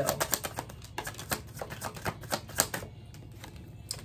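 A deck of tarot cards being shuffled by hand, the cards flicking and slapping together in rapid, irregular clicks that thin out about three seconds in.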